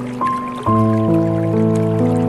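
Slow, calm piano music over a trickling-water background: a single high note about a quarter second in, then a low chord a little later that rings on, with soft drips throughout.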